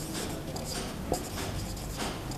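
Marker pen writing on a whiteboard: a run of faint scratchy strokes, with a small tap about a second in.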